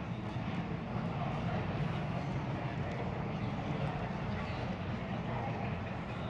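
Congregation chatting in pairs and small groups: a steady hubbub of many overlapping voices, with no single voice standing out.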